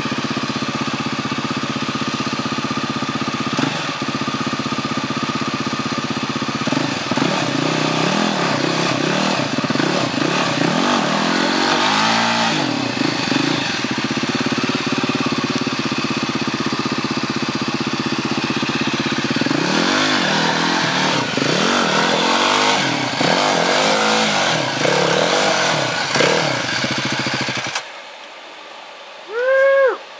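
Off-road motorcycle engine running steadily, then revved again and again in short rises and falls of pitch as the bike is worked through a deep rut. The engine sound cuts off suddenly near the end.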